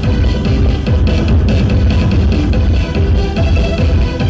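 Loud electronic dance music from a DJ set on turntables, with a steady beat and heavy bass.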